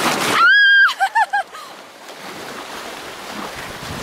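A woman's high scream, held about half a second, then three short yelps, as an inflatable raft runs whitewater rapids. Rushing and splashing river water runs under them and continues after the cries stop.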